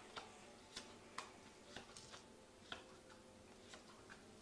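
Tarot cards being handled: faint, light clicks and taps at irregular intervals, with near silence between them.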